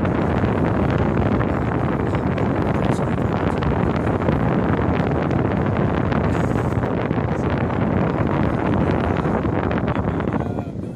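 Steady noise of a car on the move: road and cabin rumble, with wind buffeting the microphone.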